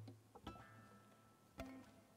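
Acoustic guitar, very faint: a ringing chord is cut off at the start, then two soft single plucked notes sound about half a second and a second and a half in.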